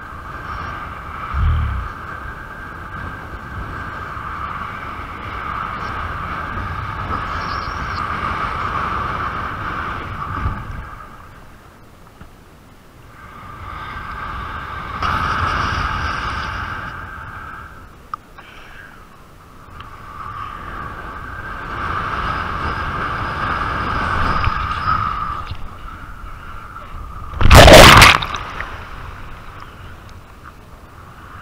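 Wind and water rushing past an action camera during a kite hydrofoil ride, with a steady high hum that fades out twice and comes back as speed changes. Near the end comes one short, very loud crash of water against the camera.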